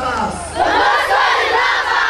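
A congregation of many voices responding aloud together in unison, swelling to full strength about half a second in.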